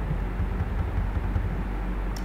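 Steady low electrical hum with faint background hiss from the recording setup, with no distinct sound events.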